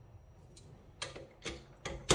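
A few light clicks and taps of small metal parts being handled at a metal lathe, four short clicks in the second half at an uneven pace.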